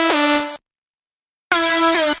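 Synthesizer notes from the Spire software synth. One note slides down in pitch and holds for about half a second, then there is a second of silence, and another held note comes in near the end.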